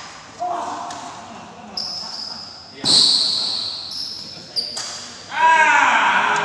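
Badminton rally in an indoor hall: four sharp racket hits on the shuttlecock, roughly one every second or so, each with a short hall echo, the third the loudest. Near the end a voice rises over the play.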